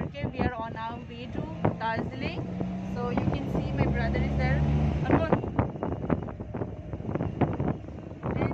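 Vehicle engine running, heard from inside the passenger cabin, with a low rumble throughout. Its drone swells and steps up in pitch a few seconds in, then settles about two-thirds through, while people talk over it.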